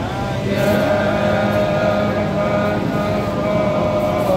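Chanting voices holding one long note that wavers slightly in pitch, over a steady low drone.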